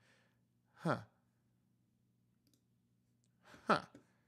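A man's short, breathy "huh", twice, each falling in pitch: once about a second in and once near the end. Between them near silence with a faint low hum.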